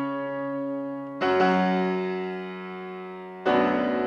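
Grand piano played solo in a classical recital: full chords struck about a second in and again near the end, each held and left to ring and fade.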